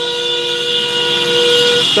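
A vehicle horn held for nearly two seconds, sounding two steady notes at once, then cut off just before the end.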